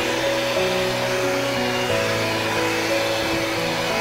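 Signora electric hand mixer running steadily with dough hooks, kneading butter into bread dough, with background music playing over it.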